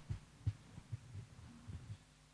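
A microphone being handled: a sharp click and then a series of irregular low thumps, over a steady electrical hum from the sound system.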